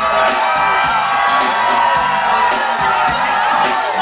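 Live band playing loudly and steadily, with drum kit, electric bass and guitar, heard from within the audience, with crowd voices and whoops mixed in.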